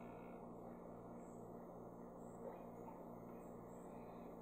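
Near silence: room tone with a low steady hum, and one faint soft sound about two and a half seconds in.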